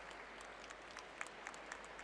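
Light, scattered applause from an arena audience after a karate kata performance, single claps standing out over a steady hiss of crowd noise.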